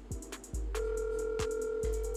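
A phone's ringback tone: one steady ring, about two seconds long, starting a little under a second in, heard from a phone over background music with a steady beat.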